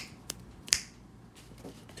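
Fingertips pressing on and pulling away from a tacky residue on a fabric cap, making three sharp sticky clicks. The loudest clicks come at the start and about three-quarters of a second in, over a faint rustle of cloth being handled.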